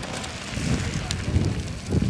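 Mountain bike tyres crunching and clattering over loose rock and scree as several riders pass, with irregular sharp clicks of stones.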